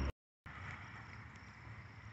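A brief moment of dead silence at an edit cut, then faint outdoor background noise with a faint steady high hum.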